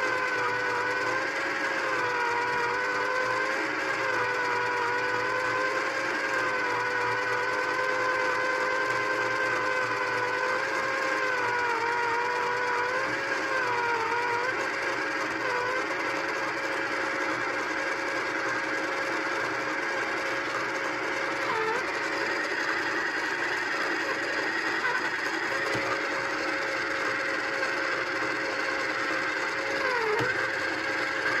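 Small battery-powered pottery wheel's motor whining steadily as it spins, its pitch wavering and dipping in the first half while hands press on the clay, then holding steadier.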